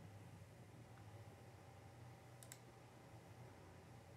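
Near silence: room tone with a faint low hum, and two faint, quick computer mouse clicks about two and a half seconds in.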